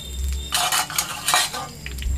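A metal spatula scraping and stirring in a black iron kadai in three or four short strokes, with panch phoron spices and dried red chillies sizzling in hot oil, over a low rumble.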